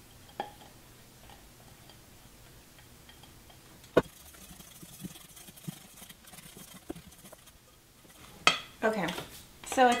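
A utensil stirring batter in a stainless steel mixing bowl, with light scrapes and clicks against the metal and one sharp knock about four seconds in. The batter is too dry. A short vocal sound and the start of speech come near the end.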